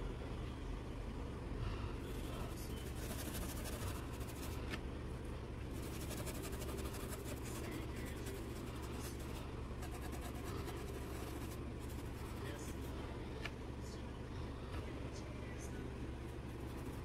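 A brush scrubbing paint into cloth in small circular strokes: faint, continuous scratchy rubbing with a few light ticks, over a steady low hum.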